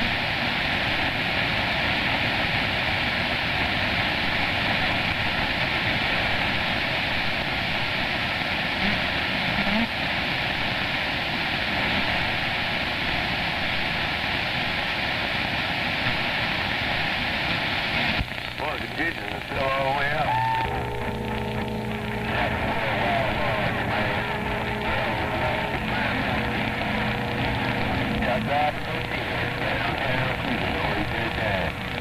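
CB radio receiver hissing with band static for about eighteen seconds. The hiss then drops, and steady whistling tones and warbling, garbled signals come through from distant stations on the band.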